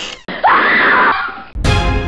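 A loud scream lasting about a second, the loudest sound here, then music starts abruptly near the end.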